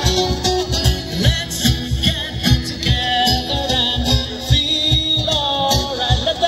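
Live band music played over a PA system: a singer's melody over a steady drum beat, about two beats a second.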